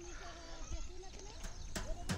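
Quiet open-country ambience with faint chirping and a few soft clicks near the end.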